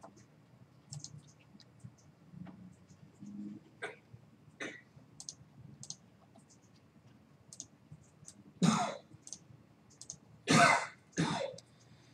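A man coughs three times near the end. Before that there are faint, scattered computer-mouse clicks.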